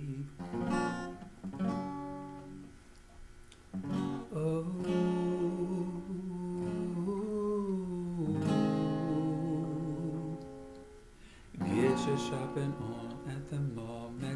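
Acoustic guitar strummed and let ring, with a man humming a wordless melody over it. The playing drops away briefly twice before picking up again.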